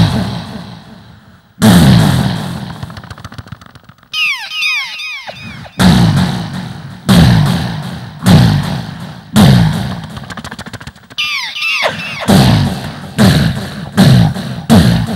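Mimicry artist making vocal sound effects into a stage microphone: a series of sudden loud blasts in the manner of gunfire or explosions, about one a second, each trailing off. Around four seconds in and again near eleven seconds, quick falling whistles lead into the blasts.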